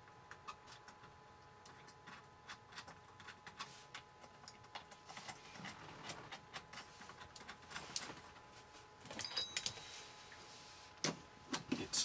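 Light metallic clicks and taps of a metal cell-interconnect strap and terminal hardware being handled and fitted onto lithium battery cell terminals. A busier run of clicks comes about nine seconds in, and louder knocks come near the end.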